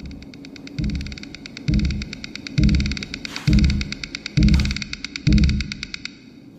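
Soundtrack of an animated short heard through a video call: a deep thump about once a second, six in all, under a fast, even clicking rhythm.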